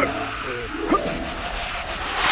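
Short squeaky cartoon-creature chirps from animated ants, two or three quick pitch glides, over a steady hiss.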